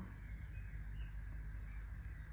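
Quiet room tone: a steady low hum with faint hiss and a thin, constant high-pitched whine, with no distinct event.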